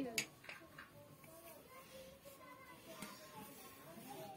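Faint background talk, quiet voices in the room, with a few light clicks in the first second.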